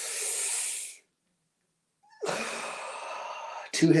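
A man's breathing as he acts out a deep hit of smoke with no joint in hand: a sharp breath drawn in through the mouth for about a second, a pause of about a second as it is held, then a long, hissing breath blown out.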